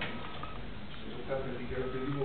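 A faint, thin electronic tone with short breaks that stops about half a second in and comes back near the end, over low talk in a room.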